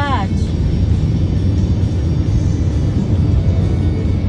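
Steady low rumble of road and engine noise inside a moving car's cabin, with a brief voice at the very start.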